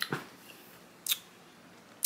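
Two short, sharp mouth clicks from chewing juicy watermelon, one at the start and one about a second in.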